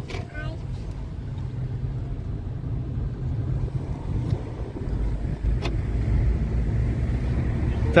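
Car cabin noise while driving: a steady low rumble of engine and tyres, heard from inside the car, growing somewhat louder about five seconds in. A single sharp click near six seconds in.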